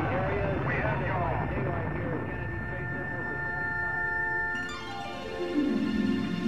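Synthesizer music holding a steady chord over a low rumble, while a rocket-launch commentary voice trails off at the start. About five seconds in, a falling sweep leads into the opening of orchestral music.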